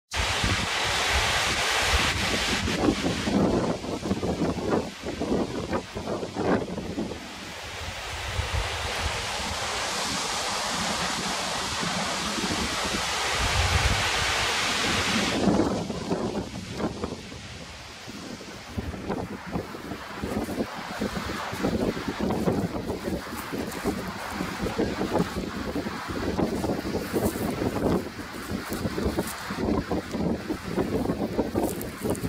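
Strong wind buffeting the microphone over the rush of surf breaking on a sandy beach. The high hiss eases about halfway through, leaving choppier low gusts.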